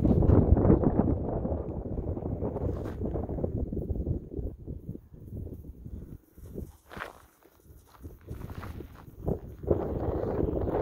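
Footsteps rustling through dry grass, with wind on the microphone, loudest in the first two seconds and dropping away for a moment near the middle, broken by a few sharp crackles.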